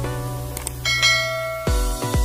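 Two quick clicks, then a bell-like notification chime that rings and fades over intro music. Near the end a bass-heavy electronic beat starts, with kick drums about twice a second.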